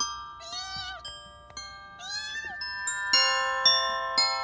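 A kitten meowing twice, each call about half a second long and a second and a half apart.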